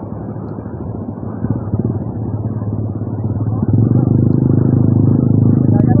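Motocross motorcycle engine running steadily, getting louder about four seconds in.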